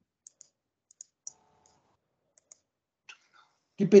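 Faint, sharp computer mouse clicks, about eight of them scattered over two seconds, some in quick pairs. They come from clicking letter buttons on a web page's on-screen Hebrew keyboard. A man's voice starts to speak again right at the end.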